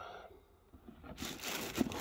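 Tissue paper in a sneaker box rustling as a hand reaches in and handles the shoes, starting about a second in and growing louder.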